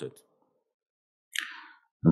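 A pause between sentences of a man speaking into a lectern microphone: near silence, then a short, sharp intake of breath about a second and a half in, just before he speaks again.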